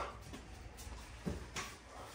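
Soft scuffs and light thumps of a dog's paws as it steps up onto a small toddler trampoline, over a low steady room hum.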